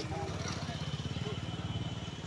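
A vehicle engine idling, a steady fast low throb, with faint voices of people around it.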